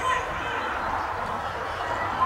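Indistinct talking from spectators and players at a football ground, with no clear words, over steady open-air background noise.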